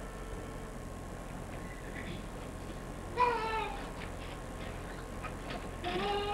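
A hushed hall, then about three seconds in a single high voice gives a short cry that falls in pitch. At the very end a high sung note starts.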